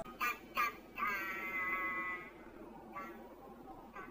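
A cartoon voice singing a dramatic "dun dun duuun": two short notes, then one long note held at a flat pitch for over a second, sounding electronically processed.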